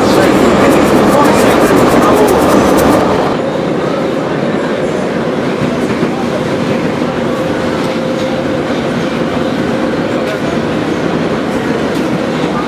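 Metro train running, heard from inside the carriage: a steady rumble, louder for the first three seconds or so, then settling at a lower, even level with a faint steady hum.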